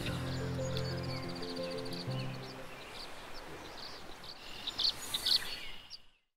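A held low music chord fades away over the first three seconds. Small birds chirp and call throughout, with a cluster of sharper chirps near the end.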